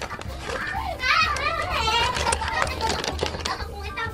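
Children cackling with laughter, their high voices bending up and down, loudest from about a second in until shortly before the end.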